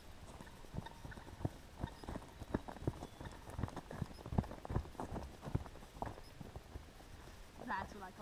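Footsteps walking across harvested corn stubble, an uneven run of short knocks about two to three a second that grows louder toward the middle and then fades.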